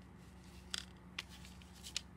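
Three faint, short rustles of paper as a paper stick puppet is moved against a paper sheet, over a low steady room hum.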